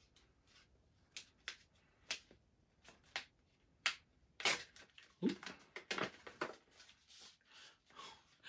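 Stiff paper note card crinkling and rustling in short, scattered crackles as it is unfolded and handled, busiest around the middle.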